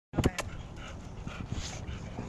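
A dog panting close by, with two sharp knocks right at the start.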